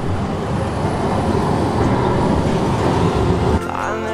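A tram passing close by on a city street: a loud, steady running noise of wheels and motor that cuts off suddenly near the end, where acoustic guitar music begins.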